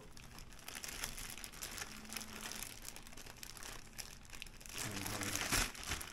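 Plastic shaker bag crinkling as it is handled with a raw pork chop and seasoned breading mix inside, louder near the end.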